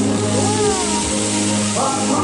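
Recorded music with sustained tones and gliding notes plays over the steady hiss of a musical fountain's water jets.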